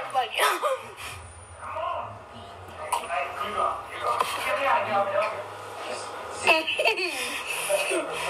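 People's voices talking, with brief laughter near the start.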